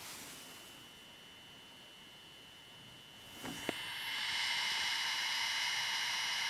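80 GB Samsung IDE hard drive spinning, a faint steady high whine over a soft hiss. A couple of light knocks come a little past halfway, and the hiss then grows louder and holds steady as the drive is heard up close.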